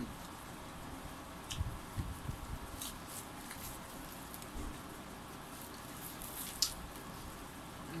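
A person eating roasted chicken with her fingers: quiet chewing and wet mouth sounds, with a few short, sharp smacking clicks, the loudest a little before the end.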